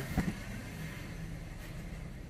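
Faint handling of a cardboard box and a cloth-bagged faucet as it is unpacked, with a single light knock just after the start, over a steady low background hum.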